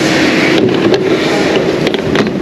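Water running steadily from a drinking-water dispenser tap into a bottle being filled.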